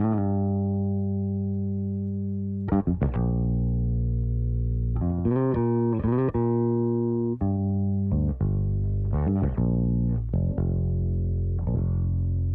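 An isolated bass part with no other instruments. It plays long, held low notes that slowly fade, broken by quick runs of short notes about three, five, eight and ten seconds in.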